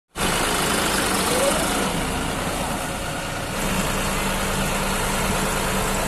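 John Deere 5210 tractor's diesel engine running steadily, with an even low hum.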